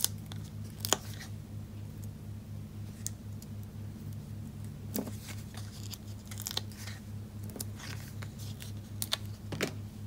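Scattered small crinkles and clicks from a paper-backed sheet of mini foam dimensionals being handled, as fingers pick and peel the adhesive pads off their backing. A steady low hum runs underneath.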